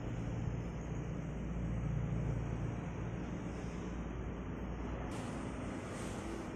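A steady low rumble of background noise with no distinct sound event, a little stronger in the first few seconds.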